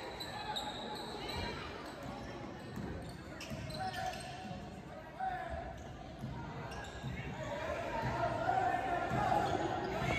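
A basketball bouncing on a hardwood gym floor in scattered thumps, echoing in the hall, over background voices that grow louder near the end.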